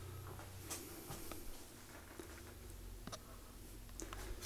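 Faint room tone: a low steady hum with a few soft clicks scattered through it.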